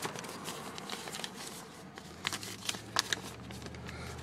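Paper rustling and crinkling as documents are handled in a glovebox, with a few sharp crackles in the second half. A low steady hum comes in about halfway.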